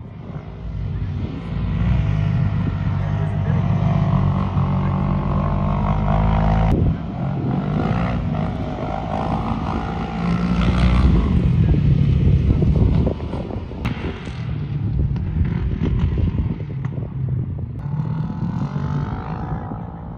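Side-by-side UTV engines running and revving as they climb sand dunes. The pitch rises and falls, and the sound changes abruptly a couple of times.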